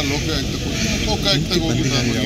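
Speech: voices talking at a press gathering, over a steady low background noise.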